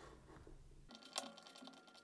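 Near silence with faint clicks at a computer, one sharper click a little past halfway.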